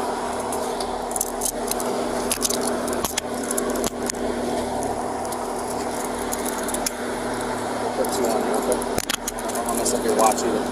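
Metal handcuffs ratcheting and clicking shut, with light metallic jangling, as they are put on a woman's wrists behind her back during an arrest. The sharp clicks come in a cluster over the first few seconds and again near the end, over a steady low hum.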